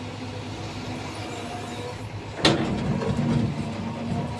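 Caterpillar hydraulic excavator's diesel engine running steadily. About two and a half seconds in there is a sharp knock as the bucket comes down into the earth, followed by a rougher, louder working sound as it digs.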